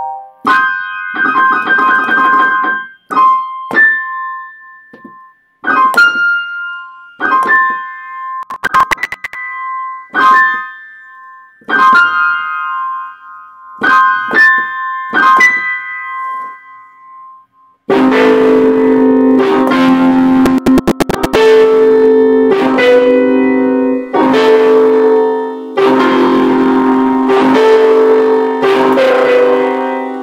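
Electronic keyboard played with a piano voice: sparse single notes and short phrases with pauses between them, returning again and again to one high note. A little past halfway it changes abruptly to loud, full chords held and played continuously.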